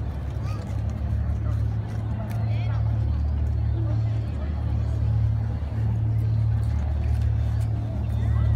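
Outdoor street ambience dominated by a steady low rumble, with faint voices of onlookers above it.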